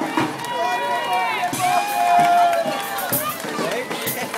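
Several voices shouting long drawn-out calls together over the chatter of a street crowd.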